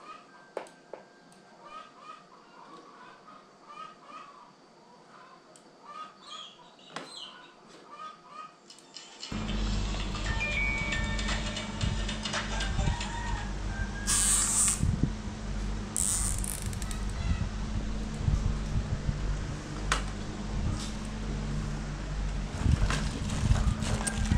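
Plastic cable ties being pulled tight around bundled cables: two short ratcheting zips about two seconds apart. Under them a louder steady hum sets in about nine seconds in.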